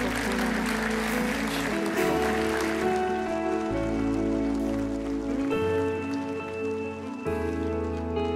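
Worship band playing a slow instrumental intro: sustained keyboard chords over long held bass notes, with the chord changing about every two seconds. A noisy wash fades away over the first few seconds.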